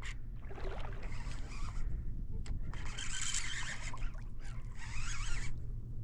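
Wind and rippling water around a kayak over a steady low hum, with two stretches of louder hiss and a faint click midway.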